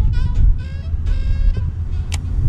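Wind buffeting the microphone, a dense low rumble. A thin high whine comes and goes twice: in the first half second and again about a second in.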